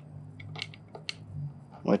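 A few faint, sharp metallic clicks as a screwdriver works at the fill screw on an 85 hp Johnson Evinrude's power trim and tilt reservoir, breaking it loose.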